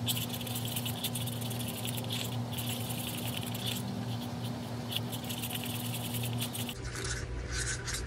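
A stirring stick scraping fast around the inside of a small cup, working dry pigment powder into GAC 100 medium to make a paste: a scratchy rasp with a few brief pauses, easing off near the end.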